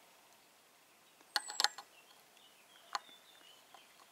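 A few sharp clicks from an air rifle scope's elevation turret being turned: a quick cluster of three or four about a second and a half in, then a single click near three seconds.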